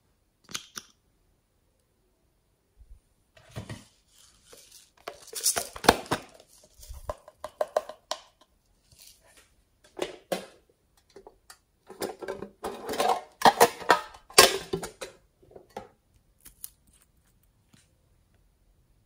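Small plastic bottles, glitter containers and metal tweezers being handled over a slime tray: irregular clicks, taps and rattles, bunched into two busier spells.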